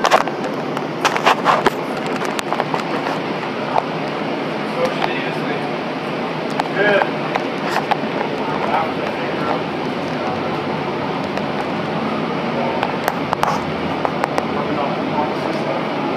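Steady background noise inside a light rail train car standing at a station, with indistinct voices of passengers. A few sharp clicks come in the first two seconds.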